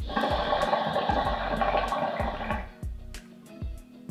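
Shisha water bubbling loudly as smoke is pulled hard through the glass base for about two and a half seconds, then stopping. Background music with a steady beat plays underneath.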